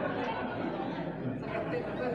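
Indistinct murmur of several voices chattering in a large hall, with no clear words.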